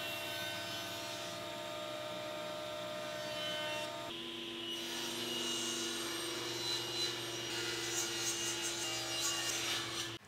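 A jointer running steadily as a board is fed across its cutterhead, then, with an abrupt change about four seconds in, a table saw running and ripping a board.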